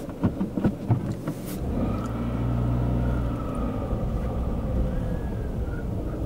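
A car engine and road rumble heard from inside the cabin while driving slowly: a few sharp clicks and knocks in the first second and a half, then the engine's low drone swells and holds steady, with a faint thin whine above it.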